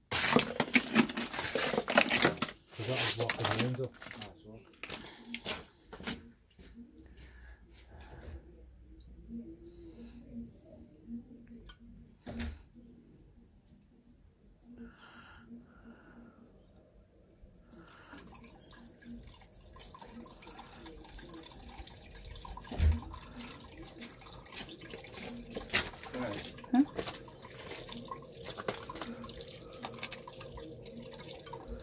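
Water running down a plastic downpipe and out onto ice packed in a drain gully, run through to melt the ice: a louder rush for the first few seconds, then scattered drips, then a steady trickle from about halfway on.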